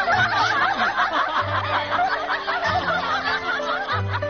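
A group of women laughing hard together, many high voices overlapping in quick rising-and-falling peals, over background music.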